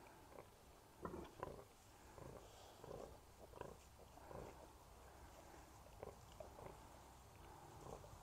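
Faint, irregular short grunts from a sow and her newborn piglets as the piglets nurse.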